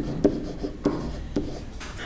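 Pen writing letters by hand on a board or tablet surface: a quick, irregular string of short taps and scratches.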